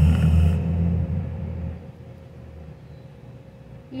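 Aerosol whipped-cream can hissing as cream sprays from the nozzle, cutting off about half a second in. Under it a low rumble fades out by about two seconds in.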